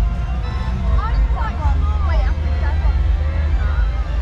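Busy funfair noise: a steady heavy low rumble, with voices and music over it and some wavering high-pitched calls about a second in.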